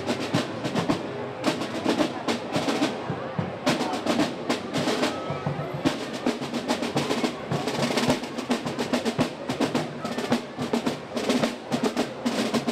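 Marching band drums, mostly snare, playing a quick, dense street cadence with rolls, with voices in the crowd behind.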